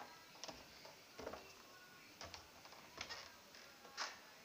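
Faint footsteps climbing a wooden staircase: soft knocks about once a second, five in all.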